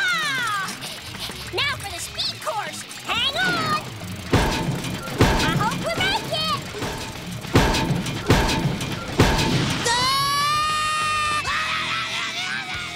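Cartoon soundtrack: music with a character's wordless yelps and screams and several sharp crashing impacts in the middle, then a long falling scream near the end.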